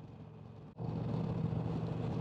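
Indian Chieftain Dark Horse's 111 cubic-inch V-twin running steadily at highway cruising speed, with road and wind noise. It is quieter at first, then cuts in suddenly louder and steadier under a second in.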